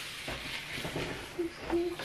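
Quiet rustling and snipping of a paper napkin being cut with small scissors, with two short murmured hums from a voice near the end.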